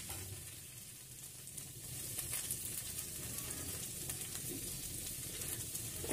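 Chopped onion, capsicum, tomato and carrot frying in mustard oil in a steel kadhai: a soft, steady sizzle with fine crackling.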